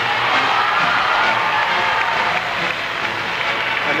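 Skating program music playing while an arena crowd applauds and cheers, the applause loudest in the first two seconds.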